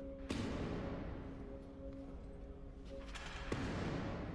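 A heavy thud about a third of a second in, its echo fading slowly, with a lighter knock near the end, over soft sustained music.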